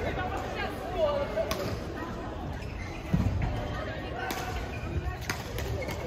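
Indistinct voices echoing in a large sports hall, with a few sharp clicks and a low thump about three seconds in.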